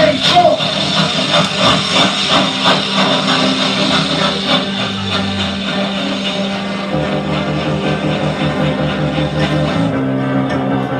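Live band with electric guitars and saxophone playing a droning passage over held tones and a steady pulse of rhythmic strokes; the low tones shift about seven seconds in.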